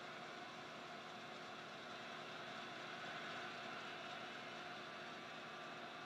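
Steady, fairly faint stadium crowd noise: an even hum of many people with no single voice or impact standing out.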